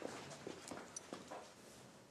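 A few faint, irregular taps that die away over the first second and a half.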